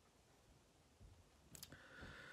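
Near silence with faint hiss, broken near the end by a low bump and a few quick faint clicks.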